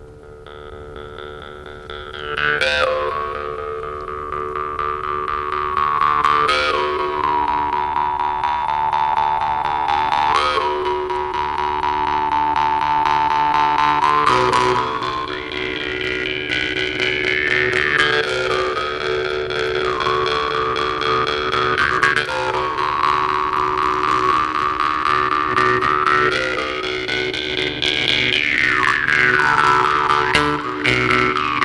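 Two jew's harps played together: a steady twanging drone with a melody of overtones shaped by the mouth, and swooping glides every few seconds. It fades in over the first couple of seconds, then holds loud.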